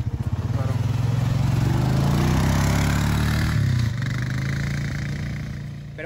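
Quad-bike (ATV) engine running with an even throb, then revving up in pitch as it pulls away and fading over the last couple of seconds.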